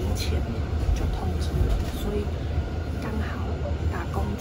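Steady low engine and road rumble of a moving bus heard from inside its cabin, under a woman talking in Mandarin.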